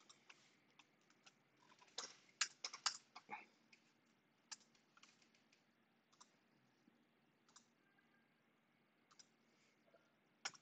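Faint, scattered clicks of a computer keyboard and mouse being used, with a quick run of key presses about two to three seconds in and single clicks after that.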